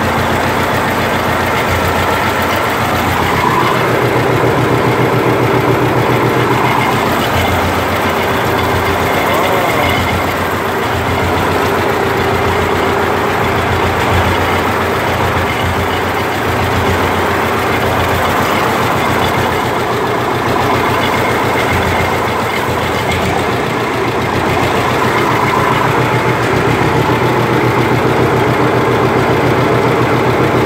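John Deere 60 tractor's two-cylinder engine running steadily at a low, even pace, on its first start after repair.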